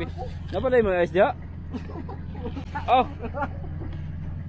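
A steady low engine hum, idling without change, under people's voices: a loud drawn-out call about a second in and a short "oh" near the end.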